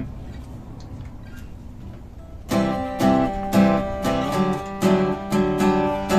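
Solid-wood cutaway steel-string acoustic guitar. A chord rings out and fades for the first couple of seconds, then playing picks up again about halfway through with loud chords struck several times a second.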